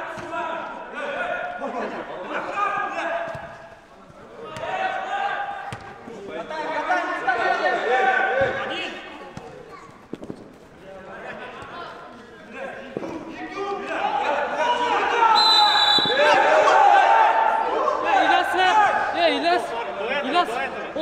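Men's voices shouting and calling across a large indoor hall during a football match, growing louder in the last few seconds, with a few dull thuds of the ball being kicked on the turf.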